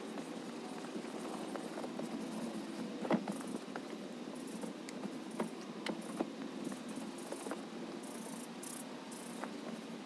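A microfiber towel rubbing on a leather car seat, with scattered light clicks and knocks from handling, the sharpest about three seconds in, over a steady low hum.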